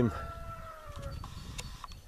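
A rooster crowing: one long call that slowly falls in pitch and fades out about a second in.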